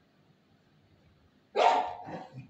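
Faint room tone, then a single loud dog bark about a second and a half in.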